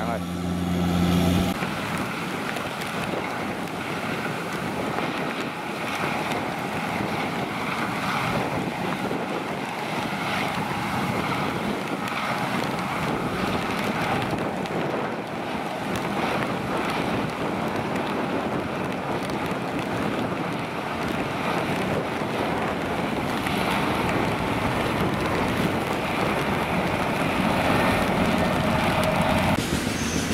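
Kubota rice combine harvester running as it works the field, with wind on the microphone. A steady engine hum in the first second and a half gives way to a rougher, even noise.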